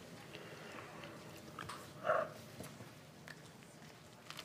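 Sandwiches being bitten and chewed: soft mouth and bread sounds, with one short louder mouth sound about two seconds in.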